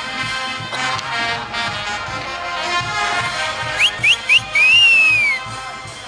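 Band orchestra music playing, brass to the fore. A little before the end three short upward whistles cut through it, followed by a longer whistle that rises and then falls, the loudest sounds here.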